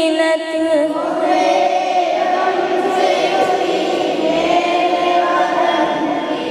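A woman singing an Urdu devotional salaam, holding wavering notes, joined about a second in by a chorus of voices singing together.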